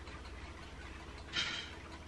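A person taking one short sniff at an opened drink can about one and a half seconds in, over a steady low hum.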